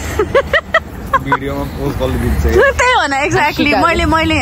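People's voices talking and exclaiming, more than one speaker, with a steady low rumble underneath.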